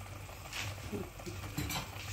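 A metal pot gripper used as tongs, clinking faintly against a pot of boiling soup a few times as it fishes in the broth.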